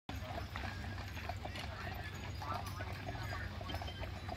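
Hooves of several carriage horses clip-clopping on a paved road, a quick uneven run of clops at about four or five a second, with voices of passers-by.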